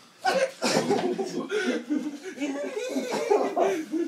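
Hard laughter mixed with coughing, breaking out suddenly just after the start and continuing.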